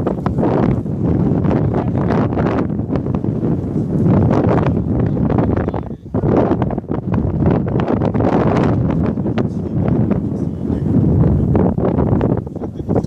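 Loud wind buffeting the phone's microphone in a steady low rumble that drops away briefly about six seconds in.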